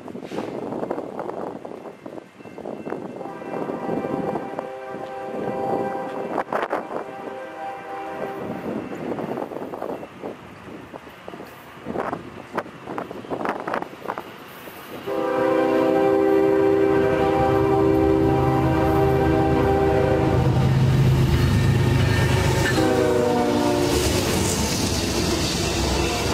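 Diesel locomotive air horn on an approaching Norfolk Southern intermodal train: fainter blasts a few seconds in, then a long loud blast from about midway, and a last short blast that drops in pitch as the GE locomotives pass. The engines' low rumble and the rolling stack cars follow.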